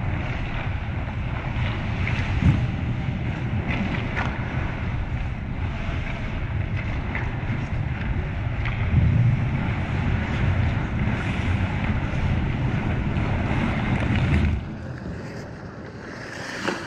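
Steady low rumbling noise with a few faint scattered clicks, which drops away sharply near the end.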